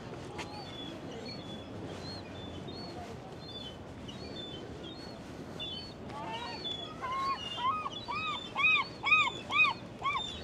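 A gull calling: a quick series of arched yelping notes starting about six seconds in, about three a second and growing louder, over faint high chirps of small birds.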